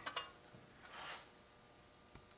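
A couple of quick clicks right at the start and a soft knock about a second in, from engine parts being handled on the bench, then near silence.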